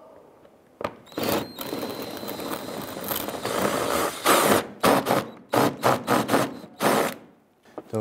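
Cordless power driver with a socket extension spinning out a rusty bumper screw, starting about a second in, with a thin steady whine over its running noise. After about four seconds it breaks into a string of short sharp bursts, roughly three a second, until near the end.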